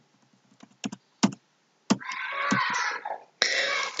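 A few sharp computer key clicks while PowerPoint slides are skipped forward. They are followed by about a second of rushing noise, and another short rush just before the end.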